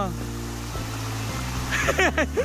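Steady rush of a small rocky stream, water running over stones, with a low rumble underneath.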